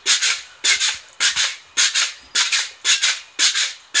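A pogo stick bouncing steadily on a concrete sidewalk, a short noisy clatter at each landing, about seven landings in four seconds.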